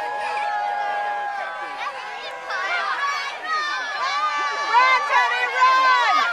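Spectators' high-pitched voices shouting and calling out encouragement to children playing flag football: one long held shout near the start, then overlapping shouts growing louder toward the end.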